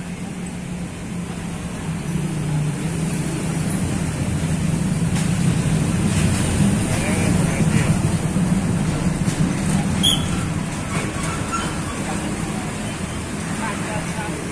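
Street traffic: a motor vehicle's engine grows louder over several seconds and then fades, over the chatter of men talking.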